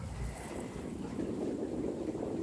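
Wind buffeting a phone's microphone: a steady low rumble with no clear rhythm.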